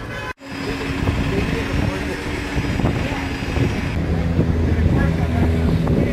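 Busy city street: traffic rumble with people's voices mixed in. The sound cuts out completely for an instant about a third of a second in, then the street noise resumes.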